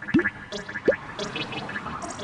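Bubbling water sound effect: two short rising bloops, one just after the start and one about a second in, over a faint bubbly patter.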